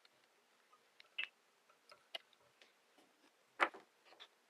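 A handful of faint, sharp clicks and taps from the fly-tying tools and hands working at the vise while the wool body is wrapped on, the loudest near the end.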